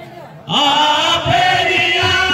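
Kirtan singing: after a quiet first half-second, a group of male voices enters loudly, chanting together with wavering pitch. A few low khol drum strokes sound under the voices.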